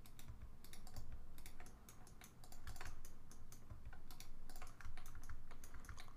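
Computer keyboard keys clicking irregularly, several clicks a second.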